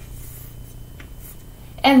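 Faint scratching of chalk on a chalkboard as a letter is written.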